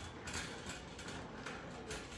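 Faint, steady rattle of a wire shopping cart being pushed across a polished concrete floor.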